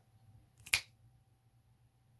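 A single short, sharp click about two-thirds of a second in, over a quiet room with a faint steady tone.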